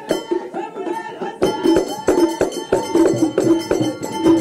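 Moroccan hdakka (dakka marrakchia) percussion: small frame drums and clay hand drums struck in a fast, dense rhythm of several strokes a second, with handclaps and voices over it.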